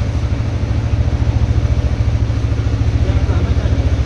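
TVS Raider 125's single-cylinder engine idling steadily, a fast even pulse with no revving.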